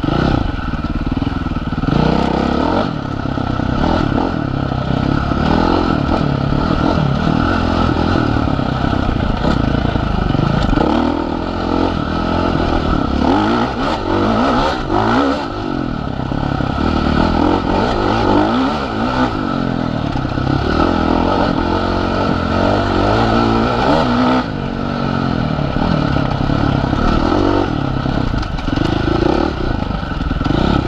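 Husqvarna FC450 dirt bike's single-cylinder four-stroke engine under way, its pitch rising and falling again and again as the throttle is worked on a trail ride. Short clattering knocks from the bike over rough ground come through now and then.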